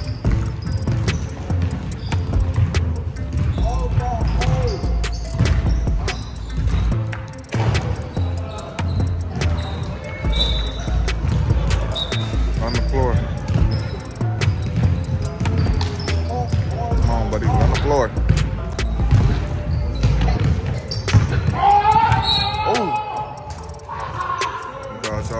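A basketball bouncing on a hardwood gym floor during play, repeated sharp impacts over a low rumble of the hall. Voices call out now and then, most strongly near the end.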